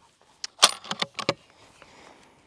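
A quick run of metallic clicks and clinks, about half a dozen within a second, from a scoped hunting rifle being handled.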